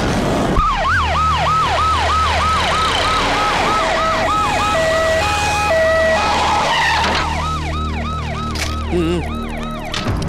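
Vehicle siren sounding a fast, repeating falling wail, about three sweeps a second. For a couple of seconds in the middle it is joined by a second siren alternating between two notes.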